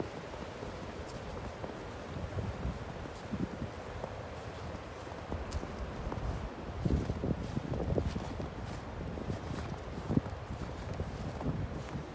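Footsteps on a snow-covered trail, irregular and soft, over a steady low rumble of wind on the microphone; the steps grow more distinct a little past halfway.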